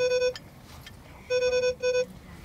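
A steady held note of one pitch that cuts off just after the start, then sounds twice more briefly in the second half.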